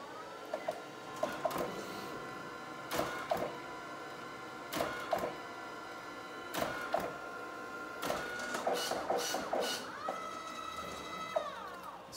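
DNP DS40 dye-sublimation photo printer running a test print: a steady motor whine with pairs of clicks about every two seconds and a quick run of clicks a little before the end, the whine winding down near the end.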